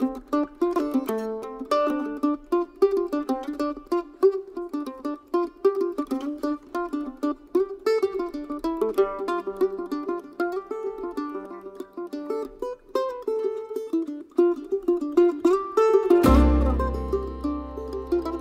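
F-style mandolin playing a quick single-note melody alone. About sixteen seconds in, the string band comes in underneath with low upright bass notes.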